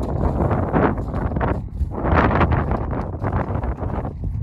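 Wind buffeting the microphone, a loud rough rushing that swells and fades in gusts.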